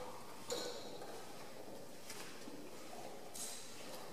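Footsteps on a hard floor: a few soft, irregularly spaced taps and scuffs over a faint, steady room hiss.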